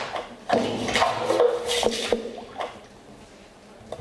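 Chopped, clicking and scraping electronic sounds over a faint held tone, from a live voice-and-electronics set. They start about half a second in and die away before the end.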